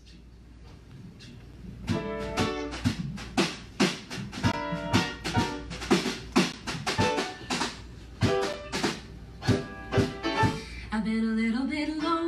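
Instrumental introduction of a musical-theatre song: a ukulele strumming chords in a steady rhythm, about three strokes a second, with the band accompanying. It starts quietly and the strumming comes in fully about two seconds in. A long held note steps upward near the end.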